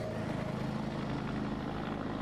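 A steady, low-pitched drone with an even, engine-like hum.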